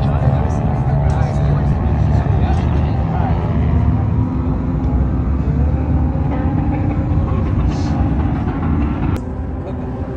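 Voices over a steady low rumble, with faint music. The sound changes abruptly about nine seconds in.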